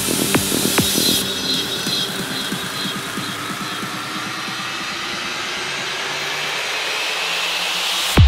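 Progressive psytrance breakdown. The kick drum drops out about a second in, leaving a rushing swept-noise riser with faint climbing tones that slowly builds toward the next drop.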